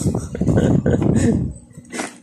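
A man laughing in quick, wordless bursts that die away near the end.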